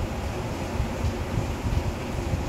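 Rain falling, heard from indoors as a steady, even rushing noise.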